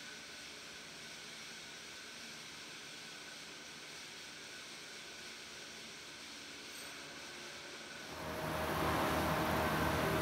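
Faint steady hiss of background noise with a few faint steady hums. A little after eight seconds in it gives way to a much louder, even rush of outdoor noise.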